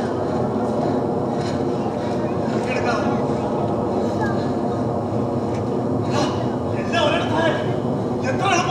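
A steady, loud rumbling noise like running machinery. Men's voices call out indistinctly over it a couple of times.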